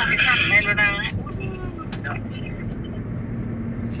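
Steady low rumble of road and engine noise heard inside a moving car's cabin, with a faint steady hum running under it.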